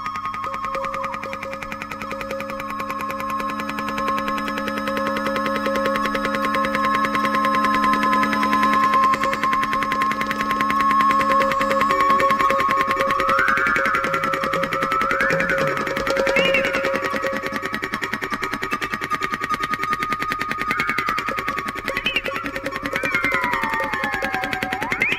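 Free improvisation on electronic keyboards and synthesizer: held electronic tones over a fast rattling pulse, with low drones that stop about halfway through. In the second half, high tones bend and glide up and down, and one falls away near the end.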